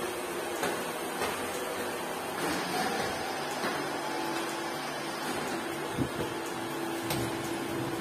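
Footsteps climbing stairs, about one step every 0.6 seconds, then a steady hum that sets in about three and a half seconds in, with a single knock near the end.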